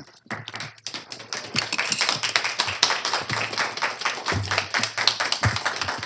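Handling noise at a podium microphone: rapid, irregular taps and rustles close to the mic.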